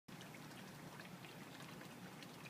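Near silence: a faint steady background hiss with a few very faint ticks.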